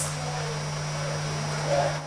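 Room tone in a lecture room: a steady hiss with a low, even hum, and no speech.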